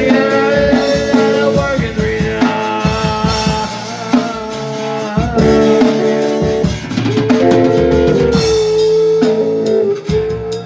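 A small rock band playing an instrumental passage: lead guitar holding long notes, some of them bent in pitch, over rhythm guitar and a drum kit.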